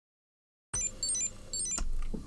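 GHD Mark V hair straighteners playing their electronic startup chirp over and over: three quick runs of high beeping notes about half a second apart, then a click. The looping startup tune is the fault, still present after the CPU swap.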